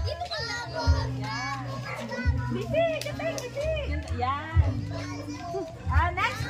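Children's voices and chatter, with music playing underneath with a recurring bass beat.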